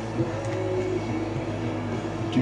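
Steady vehicle drone heard from inside the cab, with held tones shifting now and then, likely radio music playing under the road noise.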